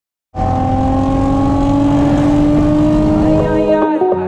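Car engine running hard at high revs, its pitch climbing slowly as the car accelerates. The sound cuts in suddenly just after the start, and music comes in near the end.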